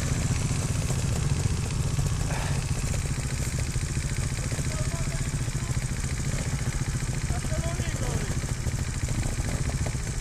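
Trials motorcycle engine idling steadily, a low even rumble.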